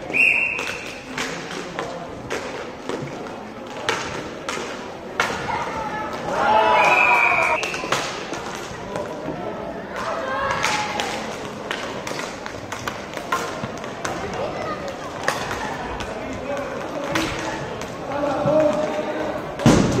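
Inline hockey play on a sport-court rink: irregular sharp clacks and knocks from sticks hitting the puck, the floor and the boards, with shouts from players and spectators in an echoing hall.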